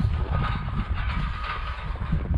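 Footsteps in snow, a run of dull crunching steps.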